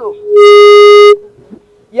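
A loud, steady single-pitched tone swells in quickly, holds for under a second and then cuts off, leaving a faint trace of the same pitch.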